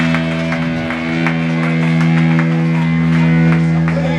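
Live punk rock band with electric guitar, bass and drums holding one long, steady chord while the drums and cymbals keep hitting, typical of a song's closing flourish.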